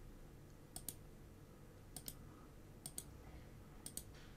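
Faint clicking from a computer being operated, about four quick double clicks spaced roughly a second apart, over near-silent room tone.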